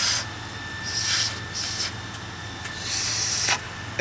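Breath blown through a small plastic survival whistle that fails to sound: about four short, airy hisses with no clear whistle note. The whistle does not work.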